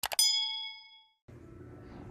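Subscribe-animation sound effect: a sharp mouse click followed by a bright bell ding that rings out for about a second. A steady low room hiss comes in after it.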